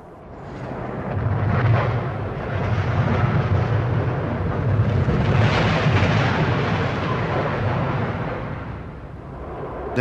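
Heavy rumbling noise of a train crash: a Class 46 diesel locomotive and its passenger coaches ploughing on through the wreck of a derailed wagon at about 100 mph. The noise swells to a peak about halfway through and then dies away.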